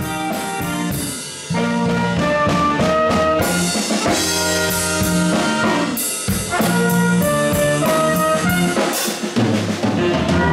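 Small jazz band playing: a trumpet leads over a drum kit with ride cymbal and drums, with guitar and bass underneath. The music gets louder about one and a half seconds in.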